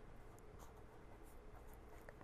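Faint, irregular strokes of a felt-tip marker writing on paper.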